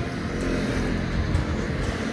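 Road traffic passing close by: a motor scooter and a car driving past, engines running with a steady hum.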